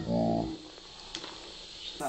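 Sprite poured from a can onto a bowl of dry cereal, a faint fizzing hiss with a couple of small clicks. A short voiced sound is heard in the first half-second.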